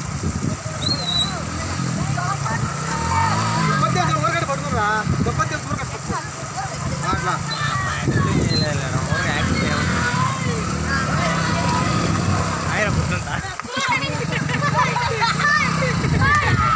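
Motorcycle engine running and revving, rising and falling about three seconds in, under several people calling out to one another as it is pushed through mud and water.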